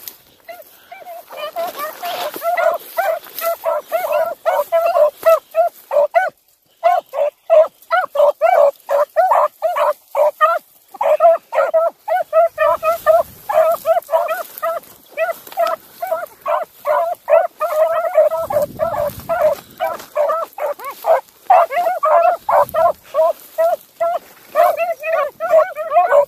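A rabbit hound baying on a rabbit's scent line, in quick short barks about three or four a second, with only brief breaks.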